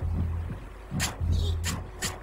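Cartoon sound effects of liquid surging and splashing: two sharp splashing cracks with deep rumbles between them.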